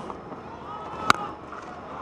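A cricket bat striking the ball once, a sharp loud crack about a second in, as the batsman hits a six, over the steady noise of the stadium crowd.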